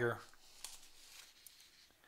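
The end of a spoken word, then a magazine page being lifted and turned by hand, heard as a faint paper rustle with a few soft ticks.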